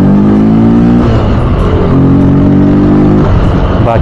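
Yamaha FZ motorcycle's single-cylinder engine pulling under throttle on the move, its note climbing gently, breaking about a second in, then holding again before falling away shortly before the end, with road and wind noise.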